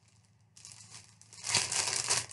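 Clear plastic packaging crinkling as it is handled, starting about half a second in and getting much louder near the end.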